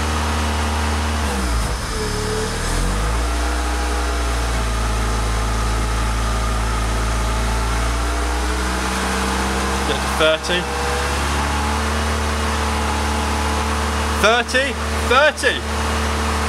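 Toyota MR2's 3S-GE four-cylinder engine running in third gear, driving a jacked-up rear wheel that spins freely in the air. The engine note dips and recovers about two seconds in, holds steady, then climbs a little about eight seconds in.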